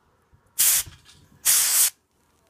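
Two short bursts of an aerosol L'Oréal Paris root cover-up spray hissing onto the hair roots, the second a little longer than the first.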